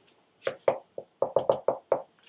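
Dry-erase marker writing on a whiteboard: a quick run of about ten short squeaks and taps as the letters "pf" and a colon are written.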